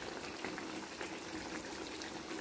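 A chicken and tomato stew simmering in a wide pan: a steady bubbling hiss with many small pops.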